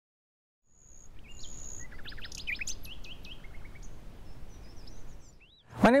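Outdoor ambience with several songbirds chirping and trilling over a low background rumble, starting under a second in and dying away shortly before a man begins to speak.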